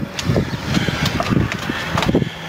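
Wind buffeting the microphone: an irregular low rumble that surges and drops in gusts.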